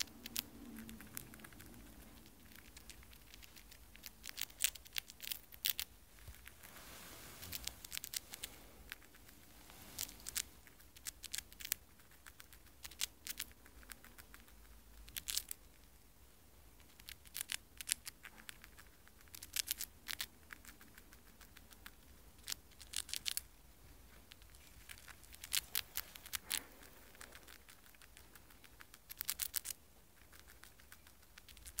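Dwarf hamster nibbling a Cheerio held in its paws: quick runs of tiny crunching clicks in bursts every two to three seconds, with short pauses between.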